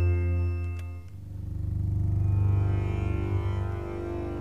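8Dio Bazantar sampled instrument playing a dark, deep phrase on the Bazantar, a five-string acoustic bass with sympathetic strings. A sustained low note fades about a second in, and a new note swells up and slowly dies away.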